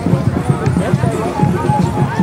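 Crowd voices over festival dance music with a quick, even drum beat.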